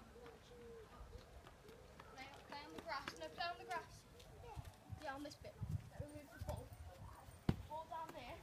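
Faint voices, then footfalls and a sharp thud near the end as a football is kicked.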